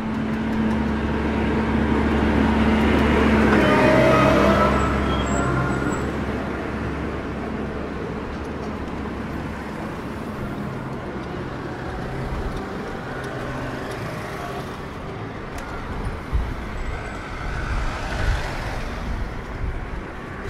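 Road traffic on a city bridge: a large motor vehicle hums and passes close, loudest about four seconds in, then the sound settles into steady traffic noise. There are a few low knocks near the end.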